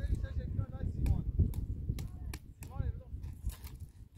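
Wind rumbling on the microphone, with a few sharp clicks and knocks as a metal tool is worked in the embers of an open wood fire pit. Faint high-pitched voices come and go.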